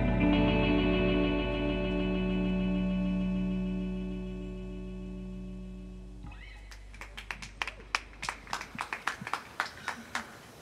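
Electric guitar's final chord ringing out and slowly fading, then cut off short about six seconds in. A few people then clap sparsely.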